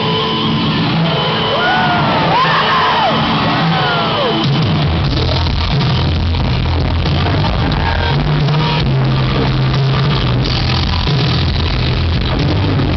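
Rock band playing live through a large hall's PA, with drums, bass and guitar. Gliding high notes sound in the first few seconds, and a heavier bass line comes in about five seconds in.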